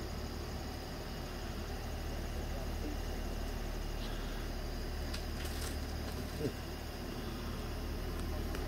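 Night-time outdoor ambience: insects trilling steadily over a low hum, with a few faint clicks and one brief soft sound past the middle.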